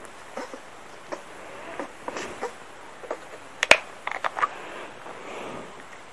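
Faint scattered clicks and small rustles over a low hiss, with the sharpest click a little over halfway through.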